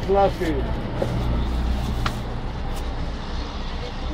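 Steady low hum of a minibus engine heard from inside the cabin, with a voice briefly at the start.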